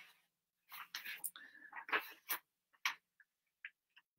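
A man muttering faintly under his breath in short broken bits, with a few small clicks near the end.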